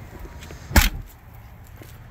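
A single short, sharp thump a little under a second in, over a low steady background.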